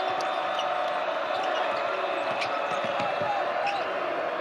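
Basketball game sound: a ball dribbled on a hardwood court and sneakers squeaking, over a steady arena crowd.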